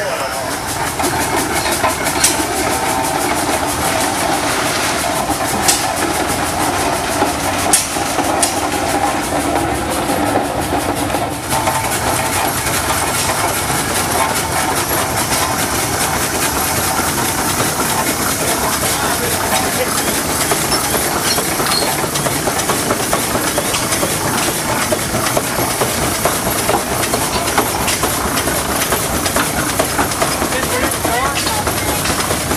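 Russell steam traction engine running: a steady hiss of steam and the rhythmic working of the engine, with a few sharp clicks in the first ten seconds.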